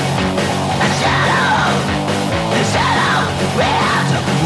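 A hardcore punk song played loud by a full band, with screamed death-voice vocals that rise and fall in pitch.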